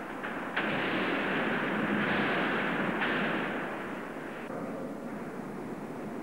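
Heavy steel plate mill machinery at the cross-cut shears: a loud, dense mechanical noise that comes in suddenly about half a second in and eases off after about four and a half seconds, heard through a thin, old film sound track.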